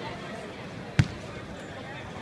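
A single basketball bounce on a hardwood court floor, one sharp thud about a second in, caught straight back in hand.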